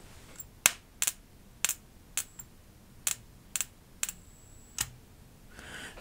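Sharp snapping clicks of electrical sparks, about eight in all at irregular gaps of roughly half a second, as a test lead is tapped against the output wire of a Wanptek KPS305D switchmode bench power supply set to about 30 volts, dead-shorting its output. Each snap is a short-circuit current spike, which the reviewer judges severe.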